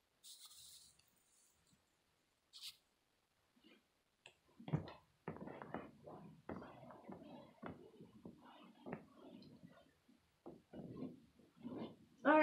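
Faint rustling, scraping and soft bumps of a person shifting about and settling on a carpeted floor, with a brief hiss near the start and a single click a little over two seconds in.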